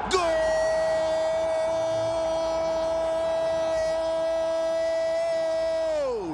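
A male Arabic TV commentator's long held shout of "goal": one steady high note for about six seconds that slides down in pitch as his breath runs out, celebrating a goal just scored.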